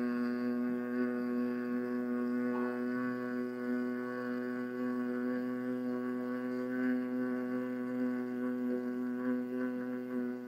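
A man's long, steady hum on one low pitch, the 'mm' of Bhramari (humming bee) pranayama, sustained unbroken on a slow exhalation.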